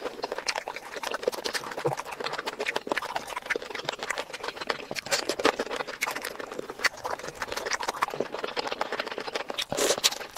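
Close-miked eating sounds: chewing and mouth noises in a dense, continuous run of wet clicks and crackles, with a louder burst near the end.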